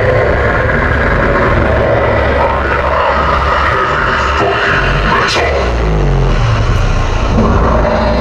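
A deep, steady rumbling drone played loud over a concert PA as part of a show's intro tape, with a quick falling whoosh a little after five seconds in.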